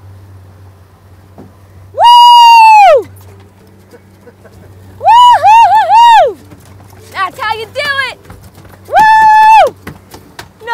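A person's loud, high-pitched whoops of excitement as a freshly gaffed wahoo comes aboard. There is one long cry about two seconds in, three quick ones together around five seconds, a shakier cry near eight seconds, and another long one near the end.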